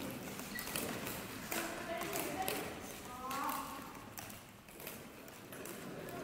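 Indistinct voices in a sports hall, with scattered sharp taps and knocks through them and the hall's echo around everything.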